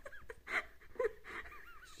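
A man laughing, in a run of short high-pitched squeaks with gaps between them.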